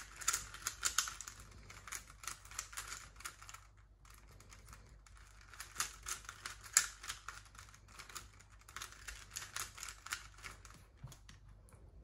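Plastic 3x3 Rubik's cube being turned by hand: faint, quick clicking of the layers in irregular runs, with a pause about four seconds in.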